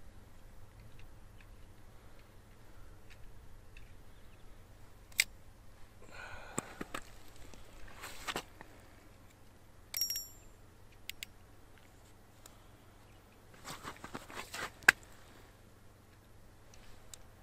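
Scattered light clicks and knocks of ice-fishing gear being handled, with a brief high metallic ring about ten seconds in and a sharp click near the end.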